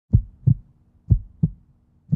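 Heartbeat sound effect: deep double thumps, lub-dub, two pairs about a second apart.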